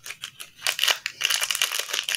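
Blind-box toy packaging being torn open and crinkled by hand: a few scattered rustles, then dense crackling from about half a second in.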